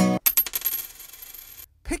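A penny dropped onto a hard surface, landing about a quarter second in with a quick run of bounces and a thin high ring that fades out after about a second and a half.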